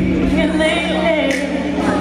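Live R&B band music with singing, voices carried over a held bass note.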